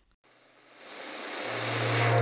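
Brief silence, then a rising whoosh that swells steadily in loudness, joined about one and a half seconds in by a low steady hum: the riser that opens a news channel's animated logo sting.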